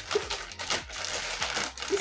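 A plastic mailer parcel crinkling and rustling in the hands as it is pulled open, in irregular crackles.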